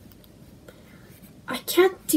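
Quiet room tone with a few faint clicks, then a voice starts speaking about one and a half seconds in.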